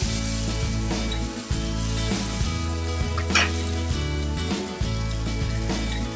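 Bread slices coated with semolina batter sizzling steadily in butter on a flat nonstick pan, with a short scrape or clink about three and a half seconds in. Background music plays under it.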